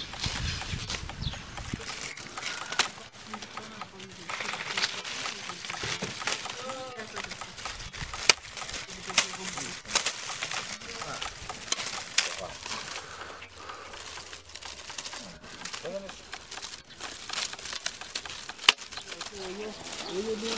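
Dry split reed strips clicking, snapping and rustling as they are handled and woven by hand into a reed mat, with sharp clicks scattered throughout.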